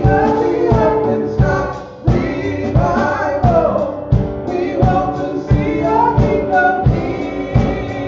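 Live gospel worship song: a woman sings lead into a microphone over keyboard and drum kit, with a steady beat.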